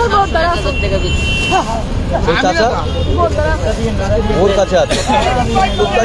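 Overlapping voices of several people talking, with a steady low rumble underneath.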